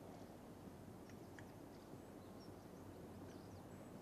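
Near silence: a faint steady hiss, with a few faint, short high chirps about a second in and again near the end.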